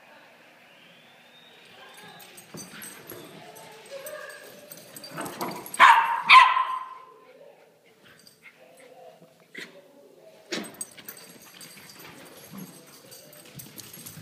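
West Highland white terrier and Havanese puppies playing, with two quick, loud barks about six seconds in and fainter yips and whimpers around them. A sharp knock comes about ten seconds in.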